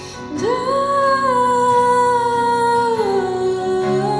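Live acoustic worship music: two acoustic guitars play under a woman's voice. About half a second in, she slides up into one long held note, then steps down to a lower held note near the end.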